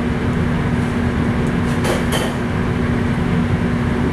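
Steady, loud roar of a commercial gas wok burner and kitchen ventilation under a simmering wok, with one low steady hum running through it. A brief hiss comes about two seconds in.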